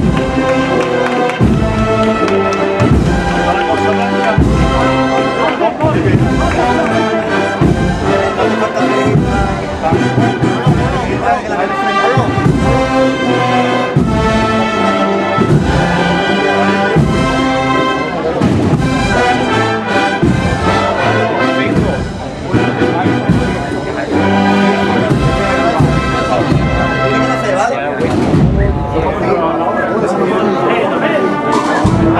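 Processional street band of brass and drums (an agrupación musical) playing a march, the brass holding sustained chords over a steady drum beat.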